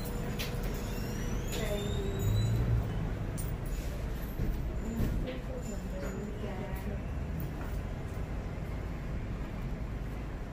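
Eyebrow threading: a twisted cotton thread rolled across the brow, giving faint, irregular snaps as hairs are plucked. Under it runs a steady low rumble, with faint voices in the background.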